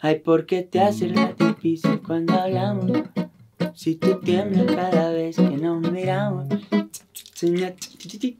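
Acoustic guitar picked in a bachata rhythm while a man sings along, stopping shortly before the end.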